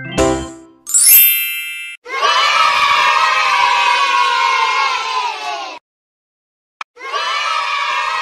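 A bright chime rings about a second in. It is followed by a crowd of children cheering and shouting for about four seconds, which stops suddenly. After a short silence broken by one click, the cheering starts again near the end.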